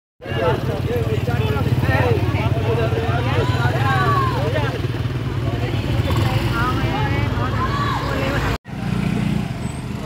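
A motor scooter's engine running steadily close by, with people's voices calling over it. The sound drops out for a moment near the end, then the engine carries on.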